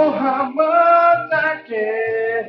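A man singing into a microphone in a high voice, holding long wavering notes without clear words, in about three phrases with short breaks between them.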